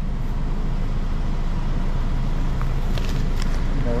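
A motor vehicle engine idling with a steady low rumble, and a few light clicks about three seconds in.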